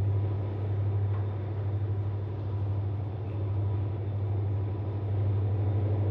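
Diesel locomotive engines running in a steady low drone with a fast, even throb as the locomotives pull the train past.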